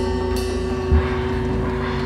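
Free-improvised drum-kit and percussion playing: a steady low drum rumble under a held tone, with scattered sharp strikes, the loudest about a second in.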